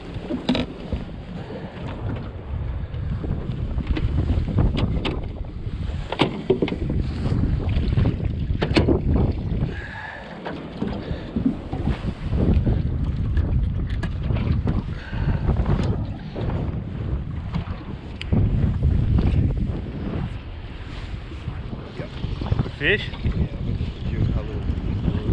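Wind rushing over the microphone as a small open boat travels across the water, a loud, uneven low rumble, with a few short knocks from the hull.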